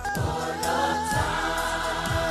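South African gospel song: a choir singing held, wavering notes over a steady beat, with a low drum thump about once a second.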